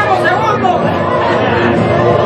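A group of people chattering and talking over each other, with music playing in the background.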